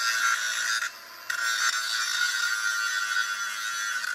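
Angle grinder grinding down old weld spots and surface rust on a steel boat-trailer frame, a steady high-pitched whine. It eases briefly about a second in, then bites again.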